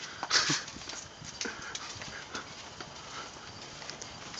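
Faint, irregular footsteps tapping on a concrete sidewalk, with a short laugh near the start.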